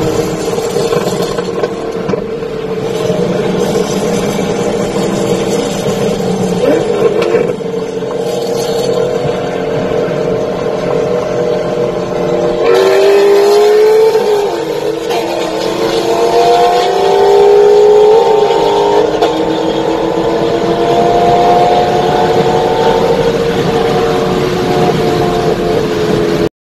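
Car engines accelerating hard at full throttle in a highway roll race, heard from inside a following car. They drone steadily at first. About halfway through the engine note jumps, then climbs in pitch and drops back at gear changes.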